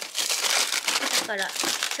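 Plastic zip-lock freezer bags of frozen vegetables crinkling as they are rummaged through and pulled out of a freezer drawer, a dense crackle for about the first second.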